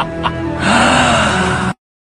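The end of a staged evil-laugh sound effect: one last short 'ha', then a loud, breathy rush lasting about a second that cuts off suddenly into silence.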